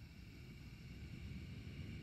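A long, steady breath out, heard as a faint breathy hiss with a low rumble on the microphone.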